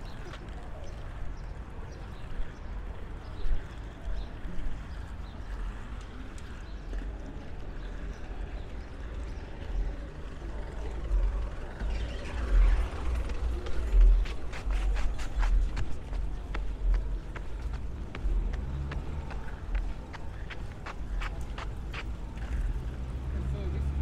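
Wind buffeting the microphone in a gusting low rumble over outdoor street noise, with a run of sharp clicks and taps from about halfway through, like footsteps on pavement.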